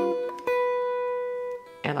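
Archtop hollow-body electric guitar in a clean tone: a few notes ringing briefly, then a single picked note, the B on the third of G7 that starts the lick, held for about a second before it is stopped.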